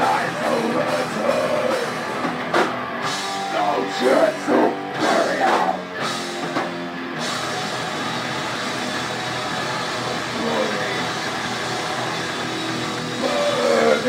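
Heavy metal band playing live: distorted electric guitars, drums and harsh vocals, loud and full. From about halfway in the music settles into a steadier, held sound.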